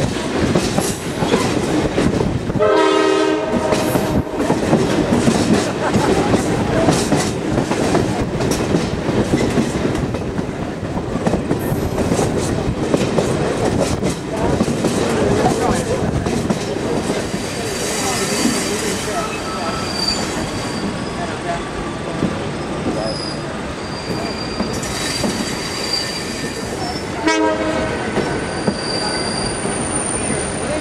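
Passenger train heard from aboard a car: a steady rumble and clatter of wheels on the rails. A short horn blast sounds about three seconds in and a shorter one near the end. In the second half there is intermittent high-pitched wheel squeal.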